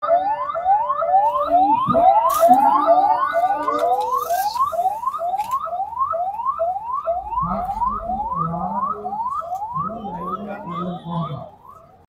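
Electronic siren in a fast yelp, about two and a half rising sweeps a second, stopping shortly before the end, with faint voices under it in the second half.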